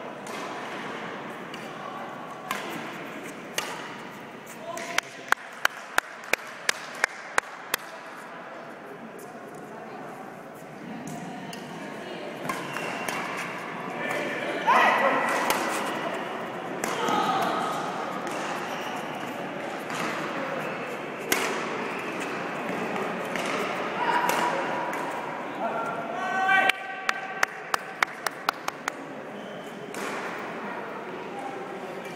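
Badminton racket strings striking a shuttlecock: two runs of sharp, evenly spaced clicks at about three a second, one early and one near the end, with voices calling out in between.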